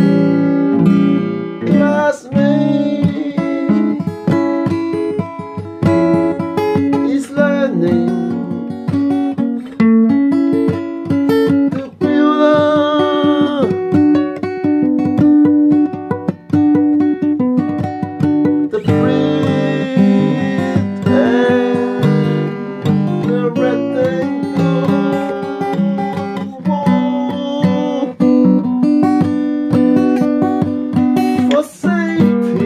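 Acoustic guitar music, with plucked and strummed notes playing continuously.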